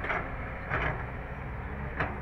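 Kobelco hydraulic excavator running, its diesel engine a steady low drone under the hydraulics as the boom swings a bucket of earth, with two short rushing bursts a little under a second apart.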